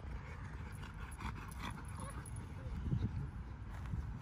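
Rottweilers running and playing on grass, with soft, uneven footfalls and a few faint clicks about a second in.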